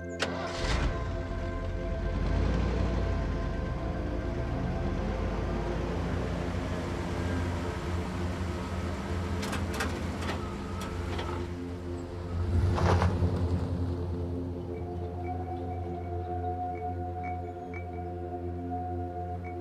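Ambient music with sustained tones over a pickup truck's engine running, the engine louder about thirteen seconds in as the truck pulls away. A sharp knock comes just after the start.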